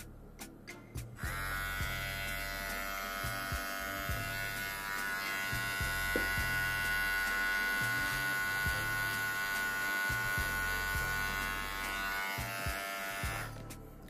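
VGR V961 cordless hair trimmer: a few clicks of its power button as the travel lock is released, then the motor starts about a second in and runs with a steady buzzing whine for about twelve seconds, stopping just before the end.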